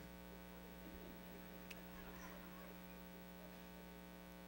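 Near silence apart from a steady electrical mains hum in the recording, with one faint click a little before halfway.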